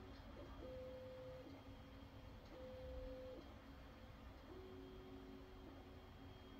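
Near silence: room tone with a faint, pure hum that steps between a higher and a lower pitch, each held for about a second.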